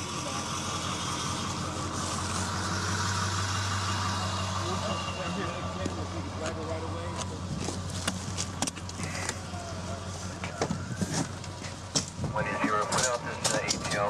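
A fire department emergency vehicle's engine idling with a steady low hum. The hum fades about ten seconds in, with a few sharp knocks scattered through.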